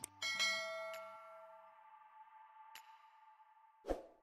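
Subscribe-button animation sound effects: a mouse click, then a bright bell-like chime that rings out and fades over a couple of seconds, another faint click, and a short loud thump near the end. Background music cuts out within the first second.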